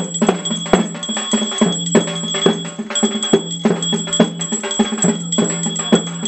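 Temple puja music during an aarti: quick metallic bell and drum strikes, about three a second, over a steady droning tone and a constant high ringing.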